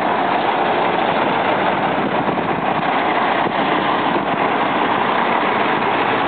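Diesel engine of a Kenworth truck idling steadily.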